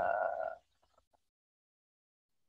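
A person's drawn-out hesitation sound, 'uhh', held on one steady pitch and fading out about half a second in; then dead silence.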